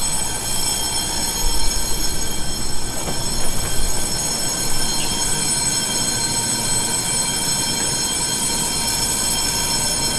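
Electric passenger train at the platform, a steady high-pitched whine over a low rumble.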